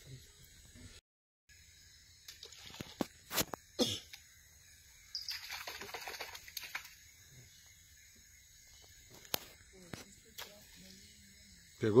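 A tucuxi river dolphin surfacing at thrown bait: a brief rush of splashing water about five seconds in, lasting about a second and a half. Before it come two sharp knocks.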